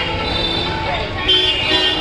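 Busy street noise: many voices and traffic, with music mixed in. A vehicle horn sounds a little over a second in.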